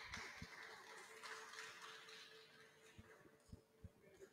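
Near silence: faint room tone with a soft hiss that fades out over the first three seconds, a low steady hum and a few soft thumps.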